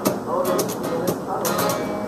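Unplugged acoustic guitar strummed in a folk-rock rhythm, with sharp strokes at the start and about one and a half seconds in, and a voice heard briefly between them.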